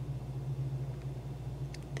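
Steady low background hum, with a couple of faint clicks near the end.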